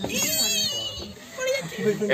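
A person's high-pitched, wavering cry for about the first second, followed by a few words of talk.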